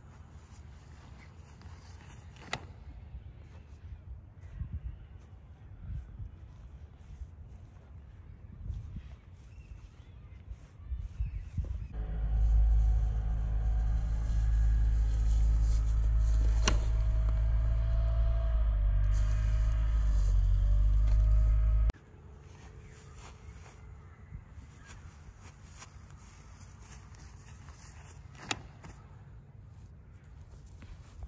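Outdoor field ambience with wind rumbling on the microphone and an occasional sharp click, cut abruptly about twelve seconds in by loud, bass-heavy music that runs for about ten seconds and stops just as suddenly.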